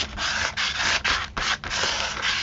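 Rough back-and-forth scraping and rubbing strokes, about three a second, as a hand-held tool spreads white medium across a glued book page on paper.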